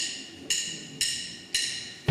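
Four sharp percussion clicks, evenly spaced about half a second apart, each with a brief ring: a count-in that sets the tempo for the brass band's entry.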